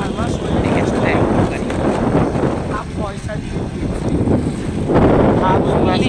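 Wind rumbling on the microphone during a ride in a moving vehicle, with short bits of talking over it.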